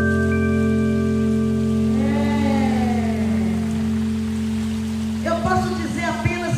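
A live band's final chord held and slowly dying away, with a steady hiss of crowd noise underneath; a voice glides briefly in the middle and talking begins near the end.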